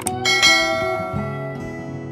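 A mouse-click sound effect, then a bright bell chime that strikes just after it and rings out, fading over about a second: the sound effect for clicking a subscribe button and its notification bell. Soft acoustic guitar music plays underneath.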